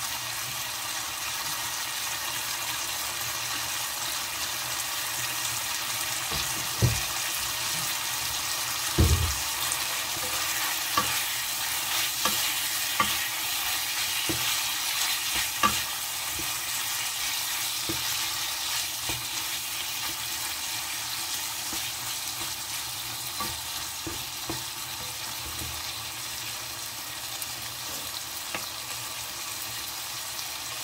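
Pork frying in chili-curry paste in a nonstick pan, a steady sizzle, with wooden spatulas scraping and knocking against the pan as it is stirred now and then; the loudest knocks come about a third of the way in.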